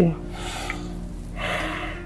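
Two long, breathy breaths from a person, heard over soft background music with sustained notes.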